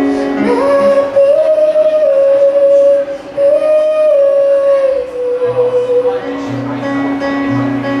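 A woman singing long held notes over her own acoustic guitar, played live. Her voice drops out about six seconds in, leaving the guitar playing repeated low notes.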